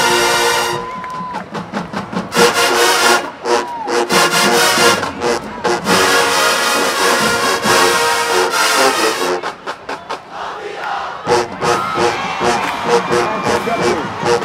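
Marching band brass holds a long chord that cuts off about a second in, then brass and drums play a driving rhythmic passage over a cheering crowd. The music drops back briefly about two-thirds of the way through, then picks up again.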